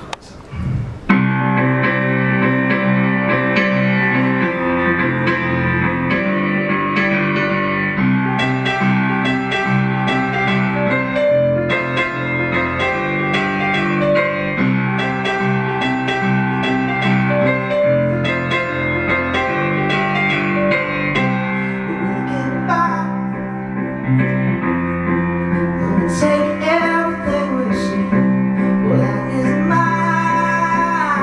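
Live solo piano intro of a slow song: sustained chords ringing out, starting about a second in. A man's voice begins singing over the piano near the end.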